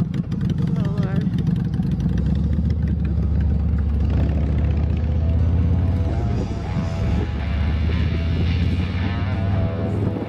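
Vehicle engines running: a Honda Shadow motorcycle engine and a low, steady engine drone that grows stronger about two seconds in. Music plays over it in the second half.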